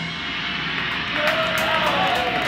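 Guitar amplifier hum and room noise just after the band stops, with a thin wavering feedback tone rising in from about a second in.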